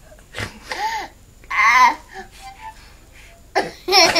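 A small harmonica blown by a young child in two short, wavering chords about a second apart, the second one louder.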